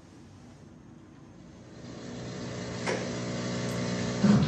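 A steady low hum made of several even tones fades in about halfway through and grows louder, with a single short click about three seconds in.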